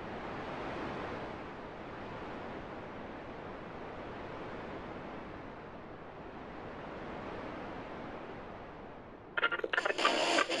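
Steady wind-like rushing noise that swells and fades gently. Music with a beat cuts in suddenly near the end.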